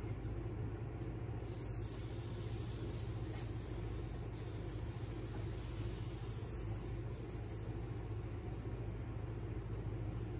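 A steady low hum, with faint soft rubbing of an alcohol-wetted rag wiped along the old finish of a piano case rim, working the alcohol in to melt scratches back into the finish.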